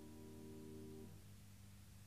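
Piano's held closing chord, released about a second in, leaving only a faint low hum and tape hiss of the old recording.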